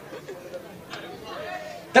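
Low, indistinct murmur of voices in a large hall, with a few faint spoken syllables and no clear single speaker.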